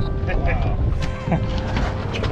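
Outboard motors running with a steady hum and a low rumble, under faint voices.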